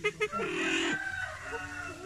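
Silver pheasant calling: a few quick clucks, then a longer harsh call about half a second in that drops in pitch at its end, followed by lower, steadier clucking.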